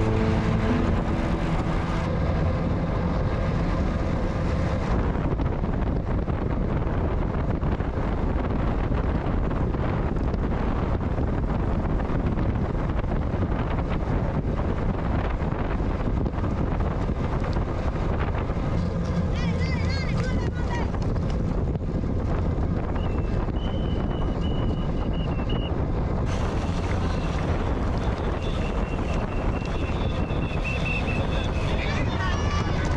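Steady wind noise rushing over the microphone of an action camera on a racing bicycle moving at race speed in a group of riders.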